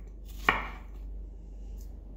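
A single sharp knock about half a second in, with a short ringing tail, while strawberries are being prepared for a cocktail. A steady low hum runs underneath.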